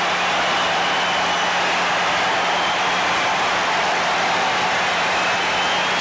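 Large stadium crowd cheering steadily on its feet, a dense, even wash of voices and applause, carried on an old TV broadcast with a steady low hum under it.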